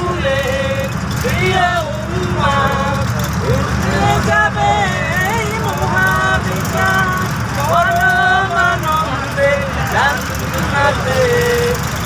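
Voices singing a melodic song in long held phrases over the steady low rumble of a bus's engine and road noise.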